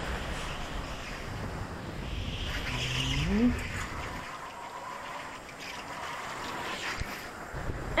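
Go-kart running on the track, its engine note rising once about three seconds in, then quieter in the second half.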